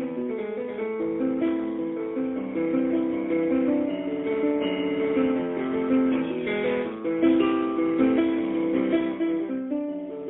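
A single instrument playing solo music live: a steady stream of overlapping notes with no voice.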